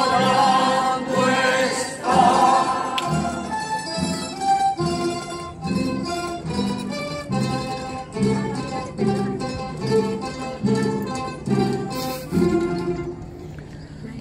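A choir and a plucked-string ensemble of guitars perform a hymn. The choir's singing ends in the first few seconds, and the strings carry on alone with a steady pulse of strummed and plucked notes, growing quieter near the end.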